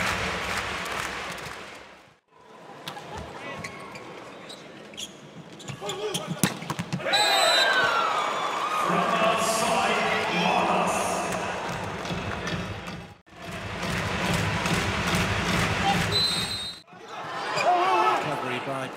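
Indoor volleyball rally sound in a large arena hall: sharp smacks of the ball being hit and played, over steady hall noise. The sound cuts out abruptly three times where clips are joined.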